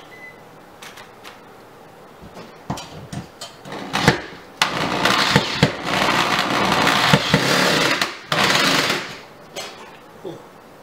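Corded electric drill with a screwdriver bit driving a screw through a steel microwave mounting plate into the wall. A few light clicks of handling come first, then the drill runs for about three and a half seconds, stops briefly, and runs again for under a second.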